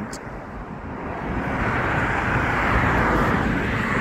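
A road vehicle passing by: tyre and engine noise that swells from about a second in to its loudest near three seconds, then begins to ease.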